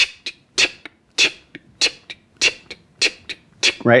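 A man's mouth making short hissing "ts" sounds to imitate hi-hats in an even eighth-note rhythm, about three a second. Every other hiss is louder, marking the beat, with softer ones on the upbeats between.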